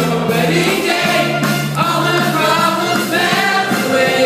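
Stage-musical cast singing together as a choir over musical accompaniment, with sustained notes held across the ensemble.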